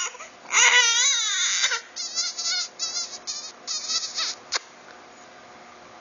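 Infant crying: one long wail falling in pitch, then a string of short, broken sobbing cries that stop about a second and a half before the end. Fussy crying for attention, which the mother calls 'dengo' (wanting to be pampered), not crying from pain.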